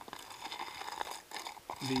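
A spoon stirring wet bean seeds around in a small plastic tub, coating them with inoculant: faint crunchy clicks and scrapes. A man's voice starts near the end.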